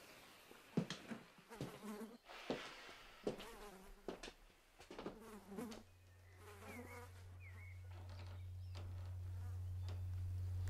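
Flies buzzing in short passes that waver in pitch, several of them starting with a faint click. From about halfway a steady low hum sets in and grows louder to the end, overtaking the buzzing.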